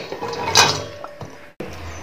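Chopped raw mango pieces tipped from a glass bowl into a stainless steel bowl, clattering against the steel, with a sharp clink about half a second in that leaves the bowl ringing briefly. The sound cuts off suddenly about three-quarters of the way through.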